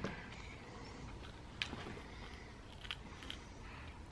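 A few faint clicks and scrapes of a baby gnawing on a banana Baby Mum-Mum rice rusk, her teeth scraping the cracker.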